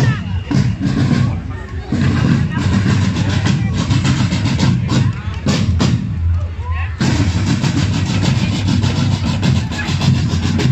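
Parade marching band's drums playing: snare and bass drums beating out a march, with crowd voices close by.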